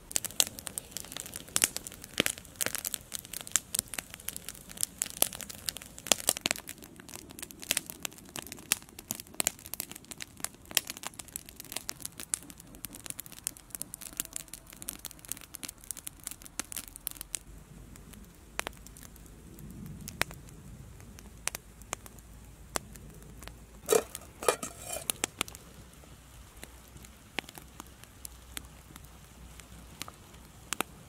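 Wood campfire crackling and popping, with many sharp cracks thick through the first half and thinning out after about halfway, and a short cluster of louder pops later on.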